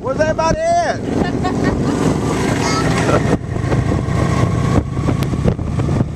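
Motorcycle engines running as they ride past, with a person's short call in the first second.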